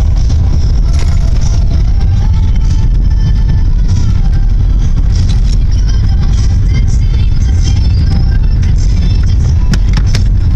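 Steady low rumble of a moving car, heard from inside the cabin, with music playing faintly over it.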